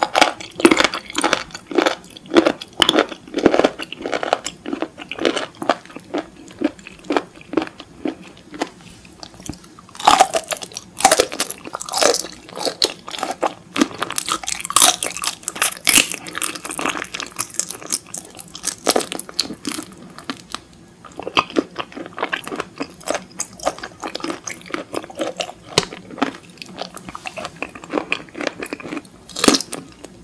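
Close-miked chewing and biting of raw seafood: a dense run of moist crunches and clicks, several a second, loudest about a third of the way through and softer in the last third.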